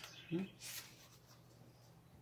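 A brief papery scrape of an oracle card being slid from the deck, just after a short murmur, over a faint steady hum.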